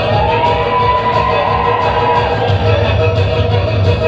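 Live Black Sea wedding dance music: an electronic keyboard with a steady drum beat and a kemençe carrying the melody, played loud through the hall's amplification. A long melody note rises and holds for about two seconds near the start.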